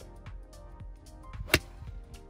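Background music with a steady beat; about one and a half seconds in, a single sharp crack of a golf club striking the ball on a full fairway shot.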